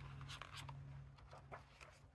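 Faint rustling of a paper page being turned in a picture book, in a few short scratchy bursts.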